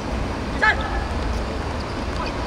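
A player's short, high-pitched shout on the football pitch about two-thirds of a second in, over a steady low rumble.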